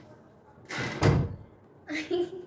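A heavy thud about a second in, with a short rustle just before it, as a metal ceiling fan blade is handled and lifted off the fan's motor housing.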